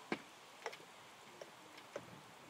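Loaded barbell with bumper plates being walked into a wooden squat rack, giving about five light sharp clicks and knocks of the bar and plates, the first the loudest.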